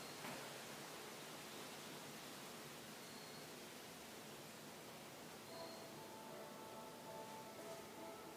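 Near silence: faint room tone and recording hiss, with a small tick just after the start and faint thin steady tones coming in past the halfway point.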